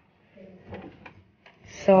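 A metal lever door handle pressed down and its latch clicking as a wooden door is pulled open, with two light clicks about a second in.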